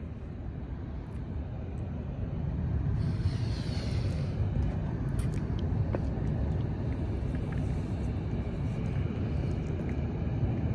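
Low, steady outdoor rumble that grows louder after a couple of seconds, with a brief hiss sweeping past about three seconds in and a few small clicks.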